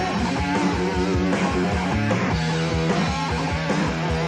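Hard rock band playing: electric guitar over a steady drum beat, with some wavering held notes.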